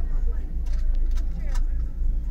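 Low, steady rumble of a car engine at a crawl, under faint voices of people around it and a few light clicks.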